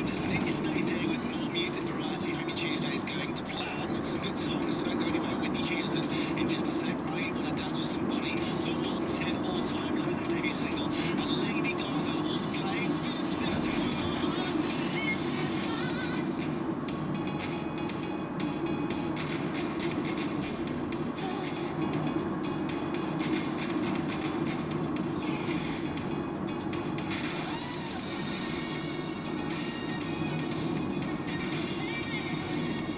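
A car radio plays music and talk inside a moving car's cabin, over the steady hum of road and engine noise.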